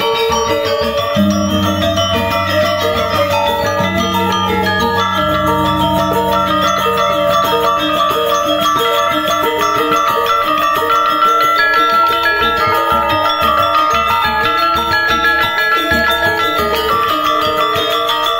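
Balinese gamelan ensemble playing: bronze gangsa metallophones and the reyong gong-kettle row ring out in dense, fast interlocking patterns. A low, deep tone sounds about a second in and holds until about five seconds.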